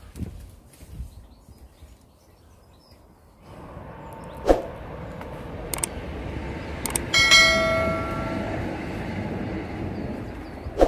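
Subscribe-button overlay sound effect: a few mouse clicks, then a bright notification bell chime ringing for about a second and a half. Under it is a steady rushing noise that starts a few seconds in.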